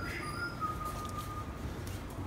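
Birds calling with thin whistled notes: one long, even whistle in the first second, with a few faint high chirps, over a steady low room hum.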